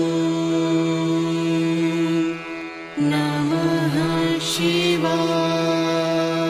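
Devotional mantra chanting over a steady drone: a long held tone dips briefly just after two seconds, then a new phrase with a wavering pitch begins before the held tone returns about five seconds in.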